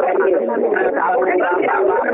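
Continuous speech over a telephone conference line, thin and narrow-sounding, in a language the recogniser could not transcribe.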